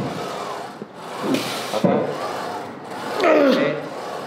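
A plate-loaded squat machine squeaking in long, wavering squeals with each rep, about every two seconds, with a rep number counted aloud.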